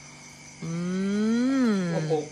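A voice hums one long "mmm" that starts just over half a second in, rising slowly in pitch and then falling.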